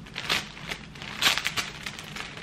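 Clear plastic garment poly bag crinkling in irregular bursts as it is handled and pulled open by hand, loudest a little past a second in.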